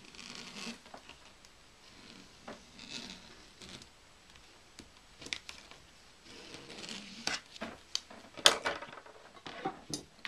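Pen tracing around a paper template on fabric: faint, intermittent scratching and rustling, with a few short sharp clicks, the loudest about eight and a half seconds in.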